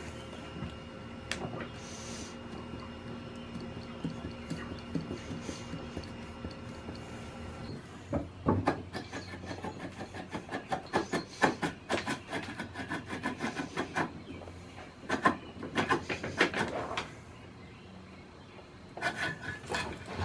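A rusted valve cover on a seized Ford flathead engine being rocked and worked loose by hand: rubbing, scraping and clunking of old metal on metal. It comes in quick clusters from about eight seconds in, and again near the end as the cover comes free.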